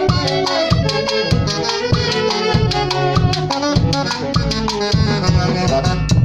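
A Peruvian folk band of several saxophones plays a lively tune together, backed by timbales, cymbal and bass drum keeping a steady beat of about two strokes a second.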